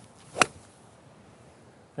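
A six iron strikes a golf ball off the grass on a full swing: one short, crisp impact about half a second in.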